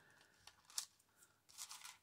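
Near silence with a few faint clicks and rustles of a strand of metal leaf beads being handled and pressed down onto paper.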